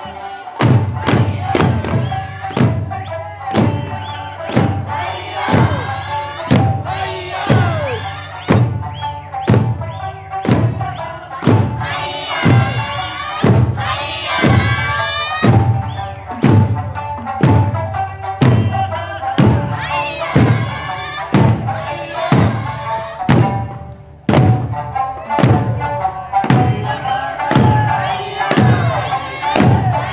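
Eisa taiko drums struck together on a steady beat, about one and a half strikes a second, over a sung Okinawan folk-song accompaniment. The drumming breaks off for a moment about three quarters of the way through, then resumes.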